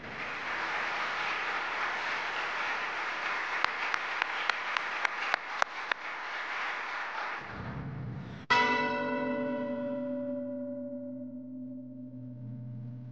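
Audience applause for about seven seconds, with a few single sharp claps standing out, then it cuts off. About eight and a half seconds in, a single bell is struck once, rich in overtones, and rings down slowly.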